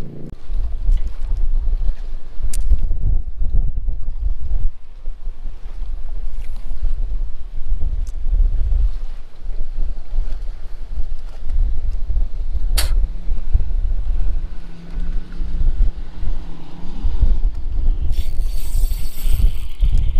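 Wind buffeting the microphone in uneven gusts aboard a small fishing boat, with a single sharp click about thirteen seconds in and a short hiss near the end.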